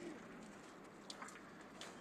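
Near silence: faint background hiss with a couple of faint ticks.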